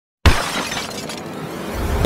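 Intro sound effect: a sudden loud crash, like breaking glass, with a noisy crackling tail that fades, then a low swell building near the end.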